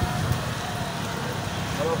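Steady low rumble of an idling motorcycle engine; a man starts speaking near the end.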